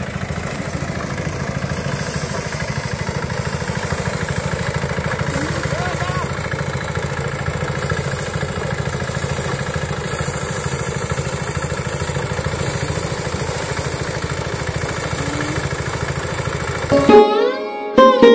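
A paddy threshing drum runs steadily with a fast, even beat while bundles of rice stalks are held against it to strip the grain. Sitar background music comes back in near the end.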